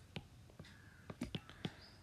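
A quiet pause with faint room hiss and about five small, sharp clicks scattered through it.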